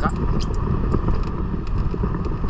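Motorcycle running at steady road speed, its engine mixed with wind buffeting the microphone.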